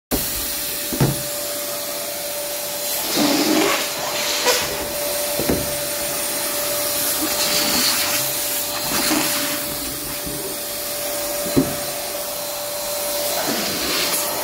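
Electric balloon inflator pump running steadily: a motor hum with rushing air as latex balloons are blown up on its nozzle. A few sharp knocks sound over it.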